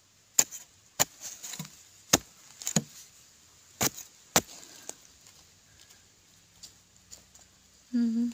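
A digging tool chopping into the ground: six sharp strikes at uneven intervals over the first four and a half seconds, then a few lighter knocks.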